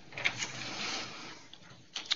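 Brief rustling and clicking handling noise, a few sharp ticks over a faint rustle for about a second, then fading away.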